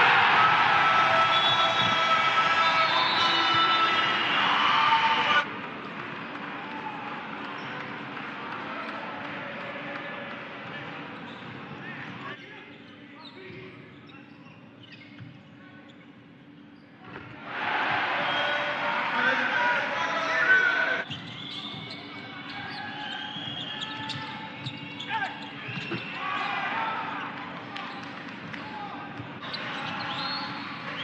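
Basketball game sound in a crowded arena: crowd noise with voices over it, and the ball bouncing on the court. The crowd is loud for the first five seconds and again for a few seconds past the middle, quieter in between. The level changes abruptly where the clips are cut together.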